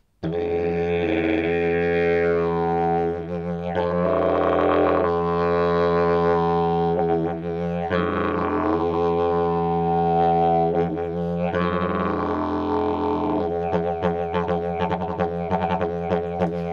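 Yiḏaki (didgeridoo) in F, made by Dhapa Ganambarr, starting a fraction of a second in and played as a continuous low drone, with the upper overtones shifting as if through changing vowels. In the last couple of seconds the playing turns into a quick rhythmic pulsing.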